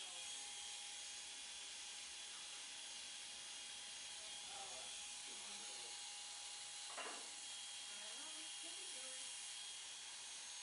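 Electric hair clippers running with a steady high buzz while shaving the nape of the neck. Faint voices can be heard behind it.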